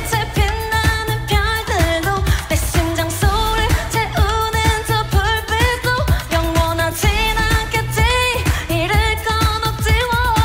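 K-pop song: a female voice sings Korean lyrics over a dance-pop backing with heavy bass and a steady drum beat.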